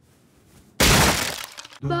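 A sudden loud crash of something breaking about a second in, dying away over about a second.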